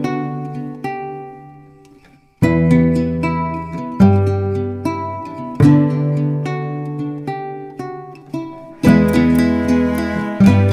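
Background music of plucked acoustic guitar notes, each ringing and fading. There is a brief lull about two seconds in before the next phrase starts.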